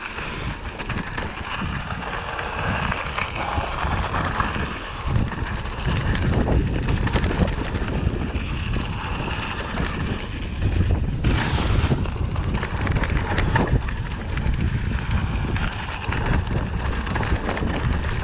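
Mountain bike rolling fast down a dry dirt and gravel trail: tyres crunching over the surface and the bike rattling and knocking over bumps, under heavy wind rumble on the microphone.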